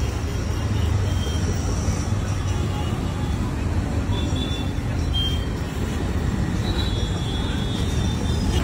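Steady street traffic: vehicle engines running close by in a busy road, with a few short high tones over it.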